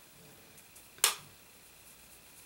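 A single short, sharp click about a second in, against faint room tone.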